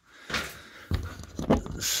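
A few dull knocks and thumps from handling a loft access hatch overhead while standing on a ladder.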